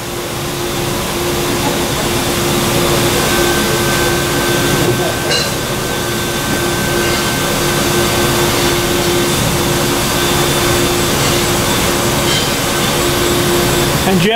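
Electric valve actuator's motor and gearbox running steadily with a constant hum, driving the choke valve's disc toward full open on a 20 mA signal. The sound stops near the end.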